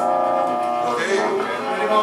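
A live rock band's electric guitars holding a sustained chord, with a second held chord coming in about a second in.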